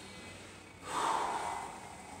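A man's single hard, noisy breath out during a standing stretch. It starts about a second in and fades within a second.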